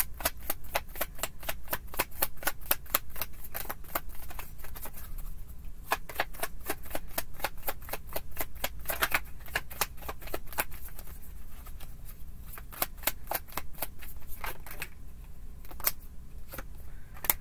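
A deck of tarot cards being shuffled by hand: a quick run of crisp card clicks and snaps, about five a second, easing off for a few seconds in the middle.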